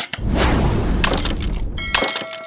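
Sound effects of an animated channel-logo and subscribe bumper: a sudden hit at the start followed by a noisy wash, a second hit about a second in, and a short ringing chime near the end.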